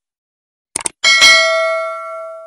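Subscribe-button sound effect: a quick double mouse click, then a bell ding about a second in that rings with several tones and fades away slowly.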